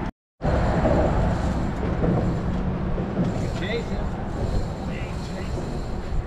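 Almost at once a brief dropout, then a steady, noisy rumble: wind on the microphone mixed with traffic on the highway bridge directly overhead. Faint voices come through now and then.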